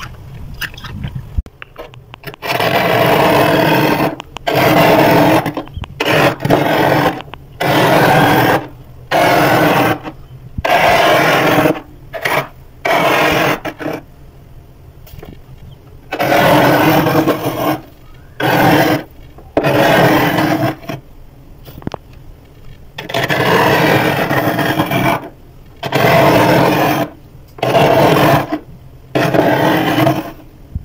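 Large metal spoon scraping thick, flaky frost off the inside of a freezer: a long run of loud scrapes, most one to two seconds long, with short pauses between them.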